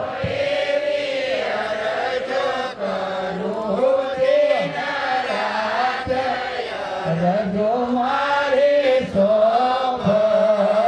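Devotional chanting by a man's voice, with long held notes that bend and waver in pitch.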